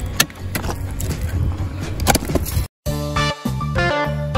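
Hammers striking rock blocks: a few sharp knocks and clicks of steel on stone. A little under three seconds in, the sound cuts out and plucked electric guitar music starts.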